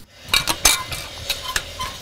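Chain and padlock clinking against the steel frame of a chain-link gate as it is chained shut and locked: a few sharp metallic clinks, the loudest in the first second, with faint ringing after the later ones.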